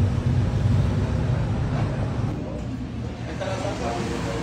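Low rumble of street traffic, with a passing vehicle fading out about two-thirds of the way through, and faint voices in the background.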